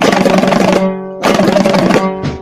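Instrumental passage of an Afghan folk song: a dambura, the two-stringed long-necked Afghan lute, strummed rapidly in two dense runs over a steady low drone note, with a brief dip between them.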